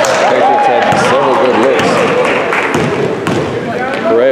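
A basketball is dribbled on a hard gym floor during play, a few sharp bounces, under voices calling out.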